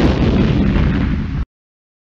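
Cartoon explosion sound effect: a sudden blast with a heavy low rumble that lasts about a second and a half, then cuts off abruptly.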